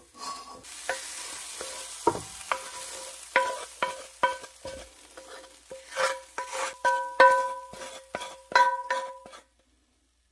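Wooden spatula scraping food out of a hot cast iron skillet into a stainless steel mixing bowl: a quick string of knocks, many leaving the steel bowl ringing, over a faint sizzle in the first few seconds. It stops abruptly near the end.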